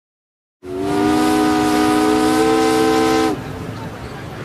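A steam whistle blowing one long, steady blast: a chord of several tones over a hiss of steam. It starts about half a second in and stops abruptly near the end, leaving a fainter hiss behind.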